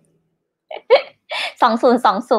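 A woman's short laugh: a few quick breathy bursts about a second in, running into voiced laughter and speech.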